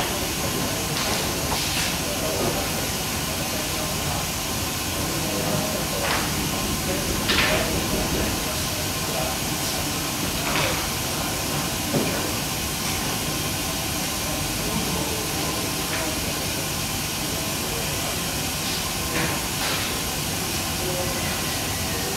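A steady hiss of running process equipment, with a few light knocks and clicks of a plastic sample bottle and funnel being handled.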